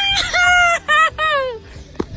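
A rooster crowing once: several linked notes with a held middle note, ending in a long falling note.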